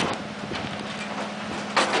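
Key lock of a steel drawer cabinet being worked by hand: light handling noise and faint clicks as the lockout is checked, over a steady low hum.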